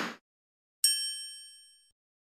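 A bell-like ding sound effect just under a second in: a sharp strike with several high ringing tones that fade away over about a second. It is preceded by a short burst of noise that cuts off just after the start.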